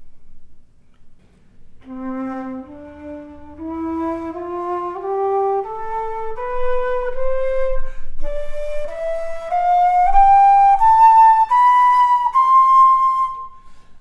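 Baroque wooden transverse flute playing an ascending D major scale over two octaves, one held note per step. The scale begins about two seconds in, with a short breath about eight seconds in before the upper octave, and it ends on the top D just before the end.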